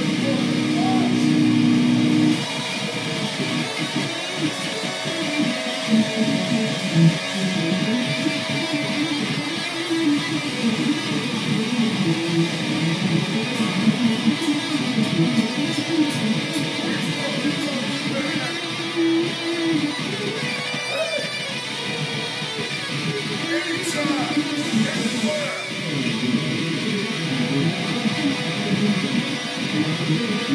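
ESP LTD Viper electric guitar playing a heavy riff: held chords for the first couple of seconds, then a busy run of low notes.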